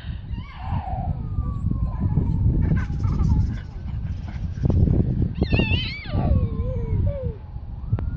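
Uneven low rumble of wind and handling noise on the microphone, with a faint, slow falling wail twice in the distance, like a far-off siren. A brief high-pitched voice cries out about halfway through.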